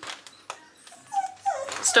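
A short high-pitched whine about a second in, after a few faint clicks of a cardboard box being handled.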